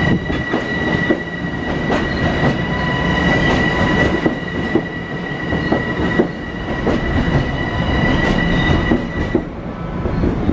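Long Island Rail Road M7 electric multiple-unit train rolling alongside the platform, its wheels clicking over rail joints under a steady rumble. A steady high-pitched whine runs over it and stops shortly before the end.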